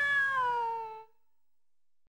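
A cat-like cartoon wail that slides down in pitch for about a second and fades out, followed by near silence.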